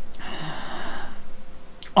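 A man's long audible breath, a breathy hiss lasting about a second, with no voice in it.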